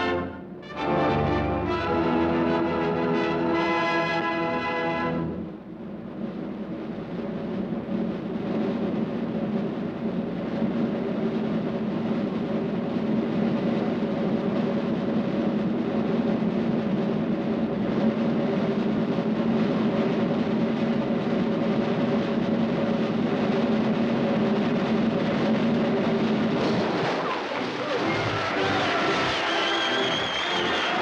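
Orchestral film score: a brass fanfare for about five seconds, then a long sustained timpani roll under a held low note, building suspense, which gives way to a new passage near the end.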